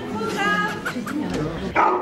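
A dog giving a few short, high barks and yips over people talking, the loudest near the end.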